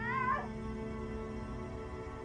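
A cat's single short meow right at the start, rising then falling in pitch, over steady background music.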